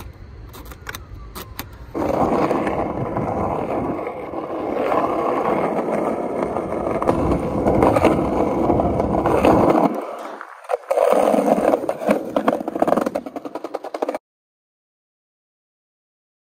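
Skateboard wheels rolling loudly over the skatepark's concrete, starting about two seconds in, with scrapes and clacks of the board. The sound dips briefly, returns with more clacking, then cuts off suddenly near the end.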